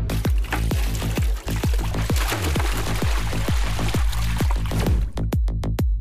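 Dramatic background score with a fast, steady thudding drum beat, overlaid by a loud rush of water splashing from a plastic bucket that starts suddenly and fades out about five seconds in.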